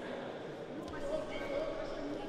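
Sports-hall ambience: indistinct chatter of spectators and officials echoing in a large hall, with no clear words.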